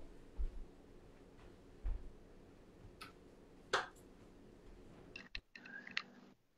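A quiet room with a few faint, scattered clicks and light knocks, like small objects being handled on a table.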